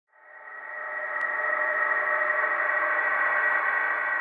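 Sustained ambient drone chord of many steady tones that swells in from silence over about the first second and then holds steady, an atmospheric intro pad under the title card.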